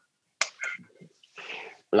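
Short, quiet mouth sounds from a person on a video call: a sharp click, faint murmured fragments, and a soft breathy noise just before speech resumes. The call audio drops to dead silence in the gaps.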